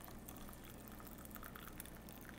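Brewed coffee pouring from a French press into a ceramic mug, a faint trickle and patter of liquid.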